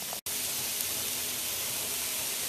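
Shredded cabbage and smoked herring sizzling in a stainless steel pan, a steady hiss, broken by a split-second dropout to silence near the start.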